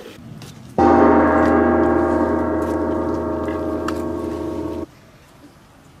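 A single struck bell rings out about a second in with many steady overtones, fades slowly for about four seconds, then cuts off abruptly.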